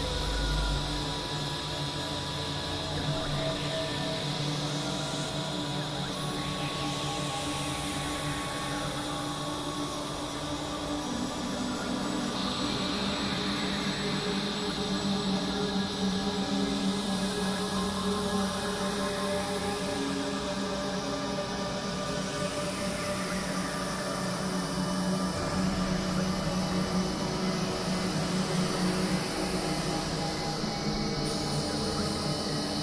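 Experimental synthesizer drone music: layered steady tones with a hissing high band and slow sweeps rising and falling above. About twelve seconds in, the low drone shifts pitch and the high band grows brighter.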